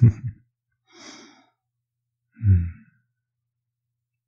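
A man's soft laugh trailing off, then a quiet breath about a second in and a short, low voiced sigh about two and a half seconds in.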